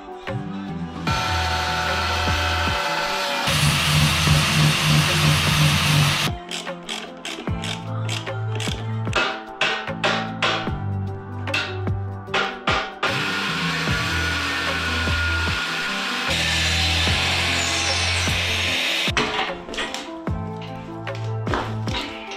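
Angle grinder cutting the steel of a motorcycle swingarm for a few seconds, then another stretch of grinding later on, heard over background music with a repeating bass line.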